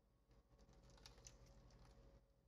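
Faint patter and splatter of tea poured from a mug onto paper lying in a metal baking pan, a run of small quick ticks starting about a third of a second in.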